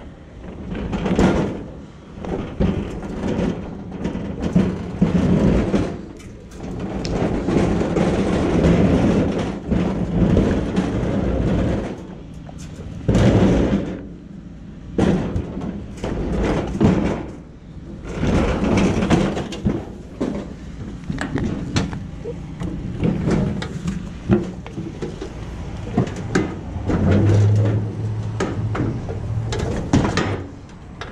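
A sheet-metal GrillMaster gas grill being closed, shifted and loaded: repeated clanks, rattles and knocks of its loose metal lid, shelves and body.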